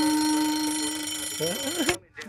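Alarm clock buzzing with one steady, slightly rising tone that fades a little and cuts off suddenly at the end.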